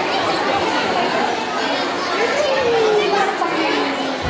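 Indoor audience chatter: many children and adults talking at once in a large hall. About two and a half seconds in, one voice rises above the chatter in a long call that slides down in pitch.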